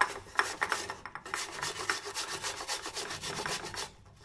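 Raw potato, skin on, rubbed up and down against the metal teeth of a flat hand grater: a rapid run of rasping scrapes, several strokes a second, with a short break about a second in.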